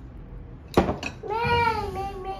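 A knock, then a toddler's drawn-out whiny vocal cry that rises a little and then sags, continuing to the end.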